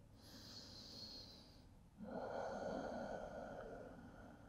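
A man's slow, faint, audible breathing: a soft breath, then after a brief pause a longer, louder one.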